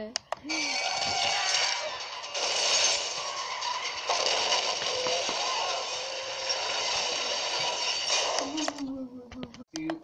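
Film soundtrack of an action scene played through a portable DVD player's small speaker: a dense, loud wash of noise with several held high tones running through it, starting about half a second in and cutting off suddenly near the end, where a voice follows.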